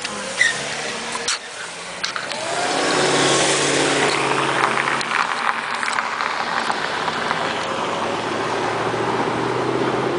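A car driving, heard from inside the moving car: engine hum with tyre and road noise, getting much louder about two and a half seconds in as it speeds up, then holding steady.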